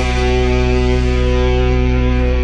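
Industrial goth rock: a single distorted chord held steady, with the drums dropping out while it rings.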